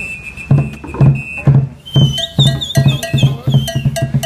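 Djembe hand drums beating a quick, steady rhythm, about three to four deep strokes a second. Over them a high whistle holds one note for the first second and a half, then warbles up and down through the second half.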